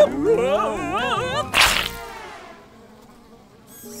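Cartoon fly buzzing with a wavering, rising and falling pitch, followed about one and a half seconds in by a short burst of hiss that fades away.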